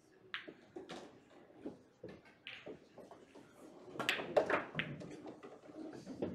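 Pool balls clicking on a pool table: a cue stroke sends the balls knocking against each other and the cushions. The sharp clicks come one by one at first, then bunch into a louder flurry of knocks about four seconds in.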